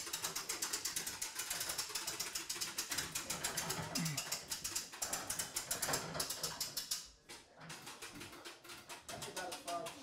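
Hand-cranked winch of a panel lift ratcheting as it raises a ceiling panel: a rapid, even clicking that stops about seven seconds in.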